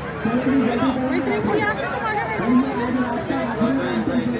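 Several children's voices chattering and calling out over one another, with no one voice clearly in front.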